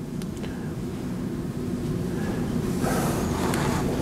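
Steady low room noise of a lecture hall picked up by the speaker's microphone, with a couple of faint clicks about half a second in and a soft hiss joining near the end.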